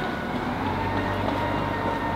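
Steady street traffic rumble, with a low hum that strengthens about a second in.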